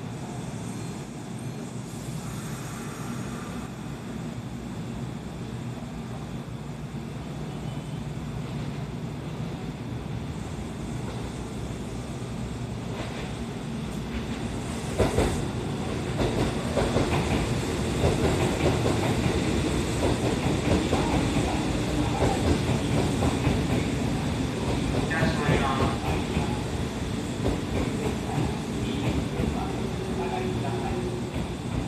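Kintetsu electric train at a station: a steady low rumble, then from about 15 seconds in the sound jumps louder into a dense clatter of wheels over rail joints as a train moves along the platform.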